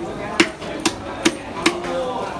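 Four sharp knocks about 0.4 s apart as a knife is struck along a large rohu on a wooden chopping block, scaling the fish.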